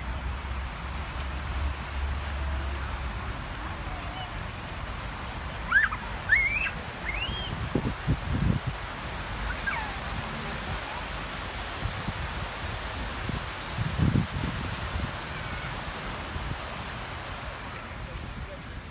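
Outdoor ambience with a steady hiss and wind rumbling on the microphone for the first few seconds. A few short high rising chirps come about six to seven seconds in, and brief low thumps follow near eight and fourteen seconds.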